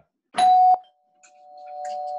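Doorbell-style ding-dong chime sound effect: a loud, sharp chime about half a second in, then two tones ringing on more softly. It serves as the cue for the guest being brought into the show.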